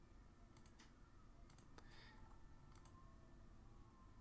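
Faint clicking at a computer over near-silent room tone: a handful of sharp clicks, some in quick pairs, spread over the first three seconds.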